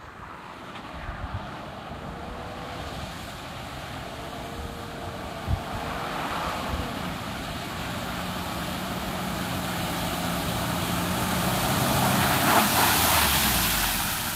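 Toyota Land Cruiser Prado 120 four-wheel drive driving fast through shallow water: a rushing hiss of spray with the engine note underneath. It grows steadily louder as the vehicle approaches and is loudest as it comes out and passes close near the end.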